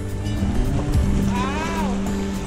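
Background music with held notes and a faint regular tick, over a low rumble. A single drawn-out voice exclamation rises and falls about one and a half seconds in.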